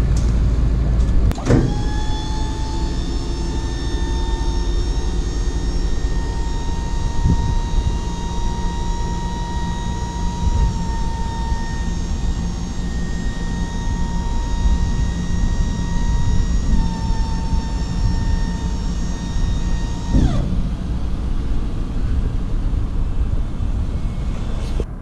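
The tipper body's electric hydraulic pump running to raise the tipping bed of a Ford Transit tipper truck: a steady electric-motor whine that spins up about a second and a half in, holds for roughly 19 seconds, then winds down in pitch as it stops. A low rumble runs underneath throughout.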